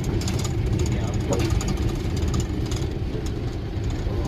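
Mahindra vehicle driving along a rough dirt track, heard from inside the cab: a steady low engine and road rumble with frequent light clicks and rattles.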